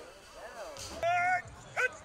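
Two high-pitched cries over background chatter: the first held for about a third of a second and the loudest, the second a quick rising yelp just before the end.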